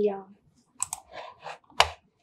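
A few sharp clicks of laptop keys and trackpad, the loudest just before the end.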